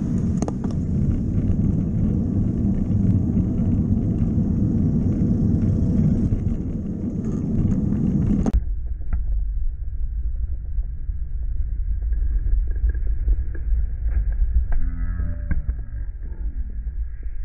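Wind noise on a bike-mounted camera's microphone while cycling, mixed with the low noise of the surrounding traffic. About halfway through, the hiss above it cuts off abruptly and the sound turns duller.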